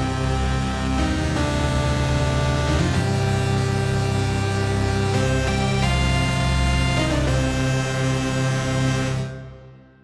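Sustained, slightly detuned synth drone chords from the 'Wall of Classics' patch of Spitfire LABS Obsolete Machines, sampled from twenty Game Boy DMG consoles. The chord changes about every two seconds, and the sound fades out over the last second.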